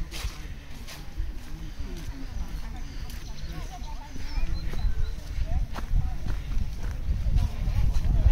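Indistinct chatter of a group of walkers, with scattered footsteps on a gravel path. A low rumble of wind on the microphone grows stronger near the end.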